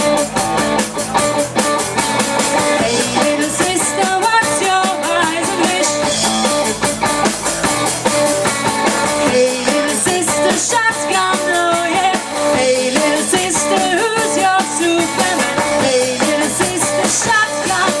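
Live rock band playing: drum kit keeping a fast beat under electric guitars and bass, with a female lead vocal.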